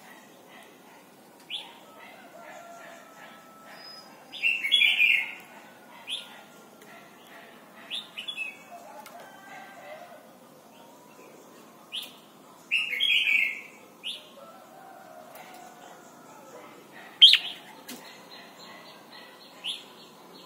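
Red-whiskered bulbul singing in short bursts: brief chirps every second or two, with two longer, louder warbling phrases about five and thirteen seconds in and a sharp, loud note near the end.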